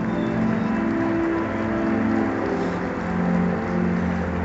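Large stadium crowd clapping steadily, with slow ceremonial music from the public-address system underneath in long held notes that change every second or so.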